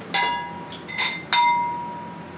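Empty glass candle jars clinking against each other: one clink, then two close together about a second in. Each leaves a short glassy ring, and the last rings on longest.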